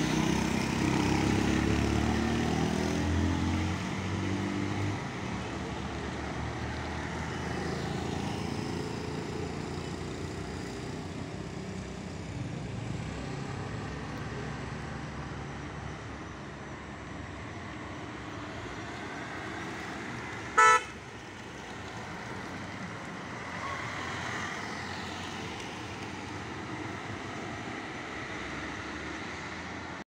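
Road traffic on a hairpin bend: the engines of vans, cars and motorbikes passing, loudest in the first few seconds, with a short, loud horn toot about two-thirds of the way through.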